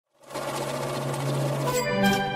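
Intro sound effect: a rapid, buzzing mechanical rattle over a low steady hum, turning near the end into a bright sustained chord.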